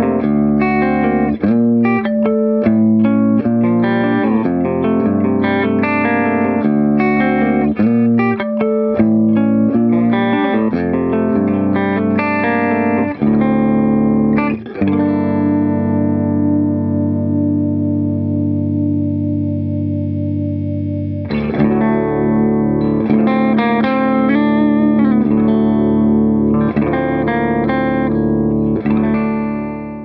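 1978 Gretsch Atkins Super Axe electric guitar played through an amplifier with its built-in compressor on: picked notes and chords, then about halfway a chord held and left ringing for about six seconds before the picking resumes.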